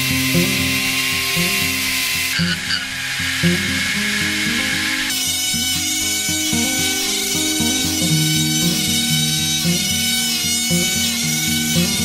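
High-pitched whine of small power tools cutting wood: a chisel against a wheel spun by a drill, then a rotary tool's cutting disc scoring tread grooves into a wooden toy wheel. Background music plays throughout.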